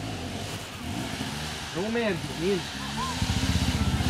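Enduro motorcycle engines running as riders struggle up a rocky creek gully, with a person giving a few short shouts about two seconds in. An engine revs up louder near the end.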